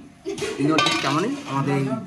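A metal utensil clinking and scraping against a steel bowl as a thick sweet mixture is worked, with the clinks mostly in the first half. A voice talks over it.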